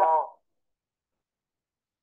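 The tail of a cow's moo, a sound effect in an animation, cutting off abruptly about a third of a second in; then dead silence.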